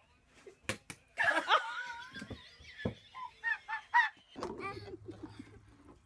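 Two quick sharp smacks, then a high-pitched shriek, a third smack, and short bursts of laughter.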